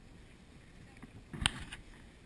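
Running on grass with a moving camera: low background noise, then a short cluster of thuds and knocks about one and a half seconds in.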